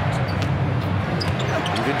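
Basketball being dribbled on a hardwood court over steady arena crowd noise, with the play-by-play commentator starting to talk near the end.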